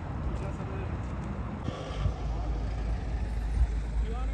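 Wind buffeting the microphone as a low, steady rumble, with faint voices in the distance.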